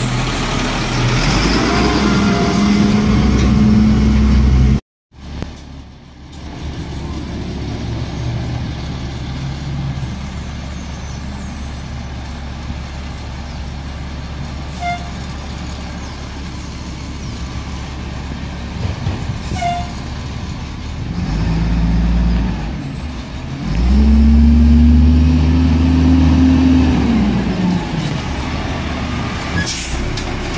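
Diesel engine of a Peterbilt 320 garbage truck running at idle, with a humming tone that swells, rises and falls in louder spells near the start and again in the last third. The sound drops out for a moment about five seconds in.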